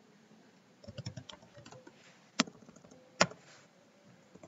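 Typing on a computer keyboard: a run of light keystrokes, then two louder single key clicks less than a second apart.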